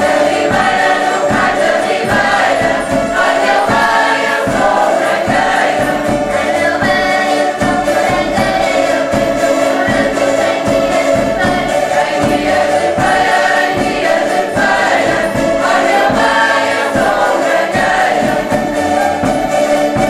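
A folk ensemble of cavaquinhos strummed in a steady rhythm while a mixed group of voices sings together, with a bass drum marking the beat.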